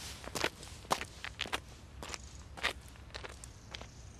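Footsteps of a person walking away across the churchyard, a series of irregular steps that grow fainter near the end.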